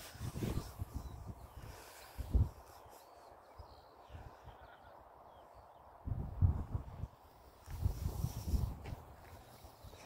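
Wind gusting on a phone microphone outdoors, with low rumbles that come and go and one sharp bump about two and a half seconds in.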